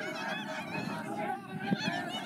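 Many spectators shouting encouragement at the runners at the same time, a dense overlap of raised voices, with one sharp knock near the end.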